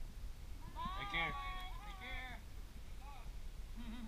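A distant person's voice calling out: a drawn-out call that rises and falls in pitch, then two short calls near the end, too faint and far off to make out words.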